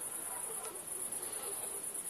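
Crickets chirping in a steady, high-pitched trill that runs without a break.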